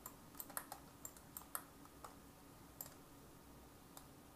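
Faint, irregular clicking of computer keys and mouse buttons: about ten sharp clicks, bunched in the first second and a half, then a few scattered ones.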